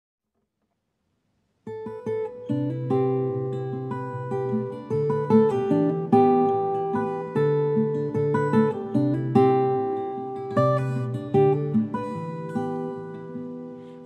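Acoustic guitar picking a steady pattern of single notes and chords, starting after a second and a half of silence.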